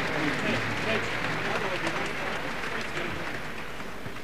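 Concert audience applauding, with many voices calling out over the clapping, gradually dying down toward the end.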